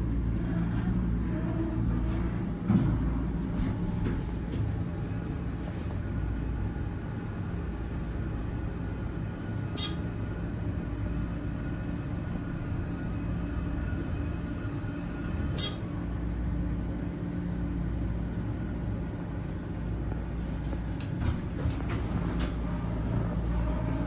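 Dover hydraulic elevator cab riding down: a steady low hum and rumble, with two short sharp sounds about ten and sixteen seconds in.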